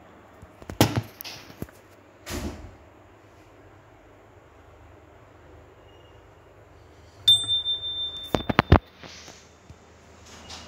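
A sharp knock and a brief rustle of handling in the first few seconds. About seven seconds in, a small brass puja bell rings one high note for about a second and a half with several quick strikes, ending in a few rapid clicks.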